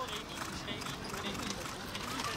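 Hoofbeats of a pair of carriage horses moving at pace through a marathon driving obstacle, an uneven clip-clop on the turf.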